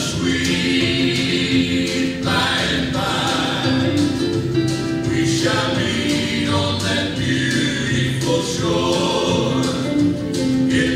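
Gospel music: a choir singing a hymn over instrumental accompaniment, in held notes that change every couple of seconds.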